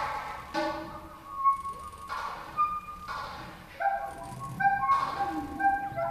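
Free-improvised ensemble music: sharp struck attacks, roughly one a second, each followed by short held ringing tones at shifting pitches.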